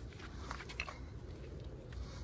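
Faint small clicks and handling noise as wire leads are worked at a brake caliper's parking-brake motor connector, over a low background rumble.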